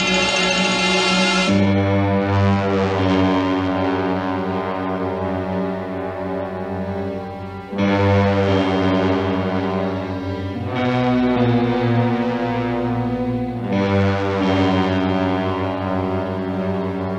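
Orchestral TV title music: low, dark brass chords, each held for several seconds, with a new chord struck three times after the first. A brighter high-pitched passage gives way to the low chords about a second and a half in.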